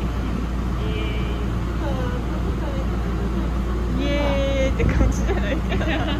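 Steady low running rumble heard from inside a moving passenger vehicle, with quiet voices over it.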